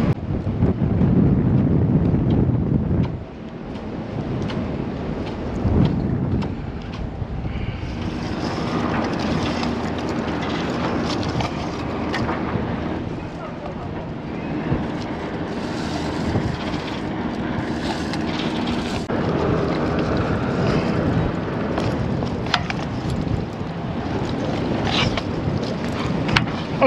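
Wind buffeting the microphone high up a sailboat mast, strongest in the first three seconds, with a few short clicks and knocks of rigging hardware being handled.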